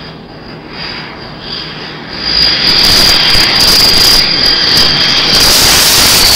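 T-2 Buckeye jet trainer on landing approach: its jet engine noise swells about two seconds in to a loud, steady roar with a high whine, and the whine drops a little in pitch near the end as the jet passes.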